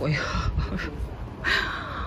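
A bird calling twice with harsh calls: a short one at the start and a longer one about a second and a half in, over a low steady outdoor rumble.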